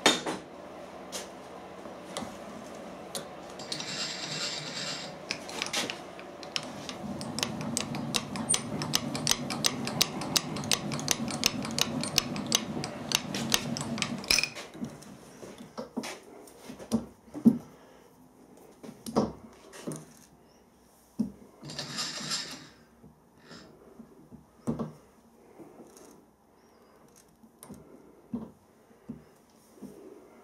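Milling machine with its table being moved under the drill: a steady mechanical hum with rapid, even ticking that stops suddenly about halfway through. After that come scattered light metallic clicks and knocks as the work and tooling are handled.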